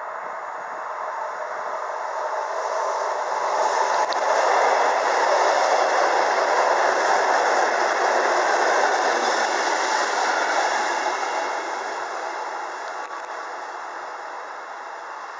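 SNCB 'varkensneus' electric multiple unit passing close by: the rolling noise of its wheels on the rails swells as it approaches, is loudest for about seven seconds in the middle, then fades as it moves off.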